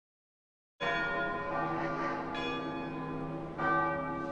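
Church bell tolling: three strokes about a second and a half apart, the first about a second in, each one ringing on with many overlapping tones.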